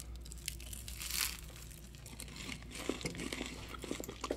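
Quiet eating sounds: crunchy bites and chewing of sugar-coated churros, with the faint crinkle of their paper sleeves and one brief crisp crunch about a second in.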